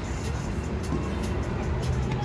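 Steady city ambience: a low rumble of road traffic with music playing in the background.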